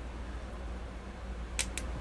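Steady low hum of a window air-conditioning unit running, with two short clicks near the end.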